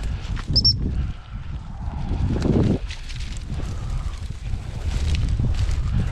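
Footsteps through rough, dry grass and scrub, with wind rumbling on the microphone. A single brief high-pitched pip sounds about half a second in.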